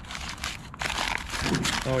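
Sheets of newspaper crumpling and rustling as an item wrapped in them is unwrapped by hand, in a few quick rough rustles.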